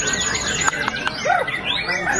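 Several caged white-rumped shamas (murai batu) singing at once: rapid overlapping whistles, chirps and trills with a few sharp clicking notes.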